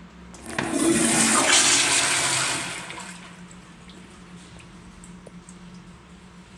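Tankless commercial toilet flushing through its flushometer valve: a short click, then a loud rush of water that starts about half a second in and dies away about three seconds in.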